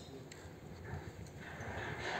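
Faint outdoor building-site background with distant, indistinct voices of workers.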